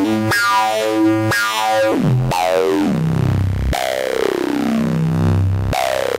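Electronica track on synthesizer: a stepped run of notes, then long falling pitch sweeps over sustained tones, with no drums.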